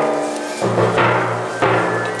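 Procession band playing a slow Guatemalan funeral march: sustained brass chords, with drum strokes marking each new chord.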